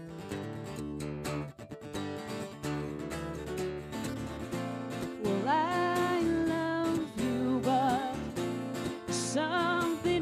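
Acoustic guitar strummed in a steady song accompaniment, with a woman's singing voice coming in about halfway through.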